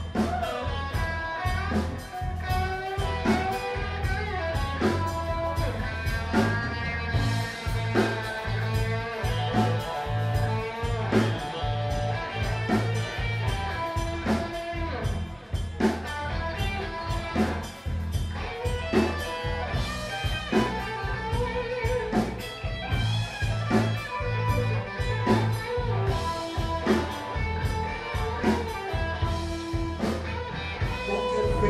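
Live band playing, with electric guitar over a drum kit keeping a steady beat.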